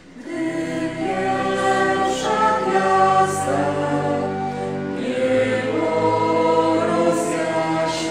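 Small mixed choir of men's and women's voices singing together, coming in about half a second in and moving through long held notes.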